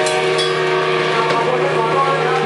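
Live rock band playing: electric guitar and bass holding loud sustained chords, with a few drum and cymbal hits.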